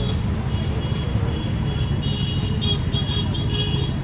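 Outdoor background noise: a steady low rumble with faint, intermittent high-pitched chirping above it that comes more often in the second half.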